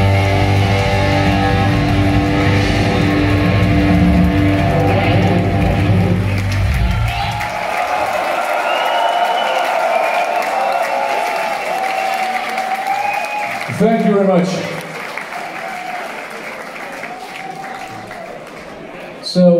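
A heavy metal band's last chord ringing out through the PA with distorted electric guitars and bass, stopping about seven seconds in. A crowd then cheers, claps and whistles, with a brief louder burst about two thirds of the way through, before dying down.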